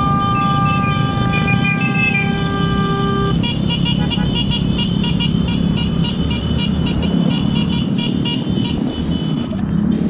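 Motorcycle engines and road rumble under a long, steady horn note that stops about three seconds in. It is followed by a rapid, regular high-pitched beeping, about five beeps a second, that lasts about six seconds.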